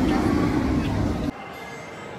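Loud low rumble with faint voices behind it, cut off abruptly about a second and a half in, leaving quieter background sound.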